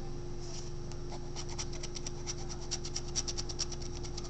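Scratch-off lottery ticket being scratched, a run of quick short strokes starting about a second and a half in.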